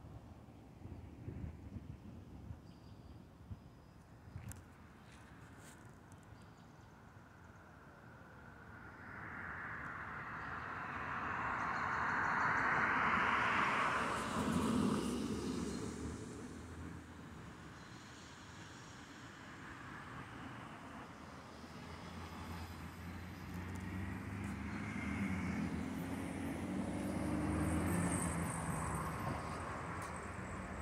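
Road traffic: a vehicle passes, its noise swelling about a third of the way in and fading a few seconds later. Near the end a second vehicle's engine grows louder as it approaches.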